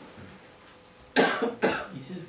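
A person coughs twice in quick succession, the two loud coughs about half a second apart, a little past a second in.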